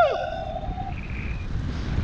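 Airflow buffeting an action camera's microphone in flight under a tandem paraglider: a steady low rumble of wind. The tail of a shouted "woo" falls away at the very start.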